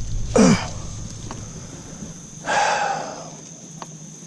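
A man's short grunt with a falling pitch, then about two seconds later a breathy exhale lasting under a second, as he strains to free a lure snagged in a tree branch.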